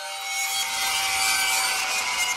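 Synthetic whooshing hiss of a logo-reveal sound effect, with a few faint steady tones beneath it, swelling slightly in loudness.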